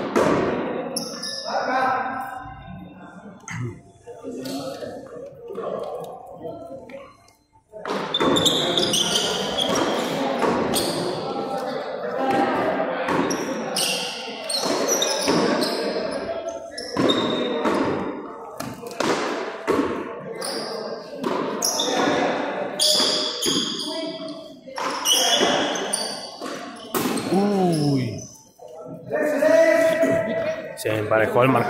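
Frontón ball being struck by hand and smacking off the concrete front wall again and again during a rally, the sharp hits ringing in the large court hall. Players' voices and calls come in among the hits, densest in the second part.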